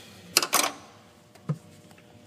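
Hands working a coolant hose and its clamp off a throttle body: a sharp click with a short rattle about half a second in, then a smaller click near the middle.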